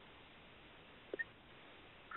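Near silence: dead air on a phone-in line whose caller has her microphone muted, just a faint hiss with one brief blip a little after a second in.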